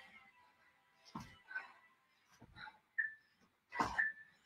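Sneakered feet landing and pushing off a floor mat during a side-to-side jumping exercise: a handful of irregular thuds, with a few short high squeaks near the end.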